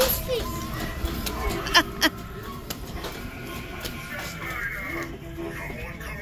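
Music playing in a shop with voices and children's chatter around it, and two short, loud sounds close together about two seconds in.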